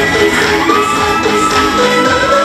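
K-pop dance track played loud over a stage sound system, with a held synth line. Right at the start the music drops its sustained bass for a busier beat.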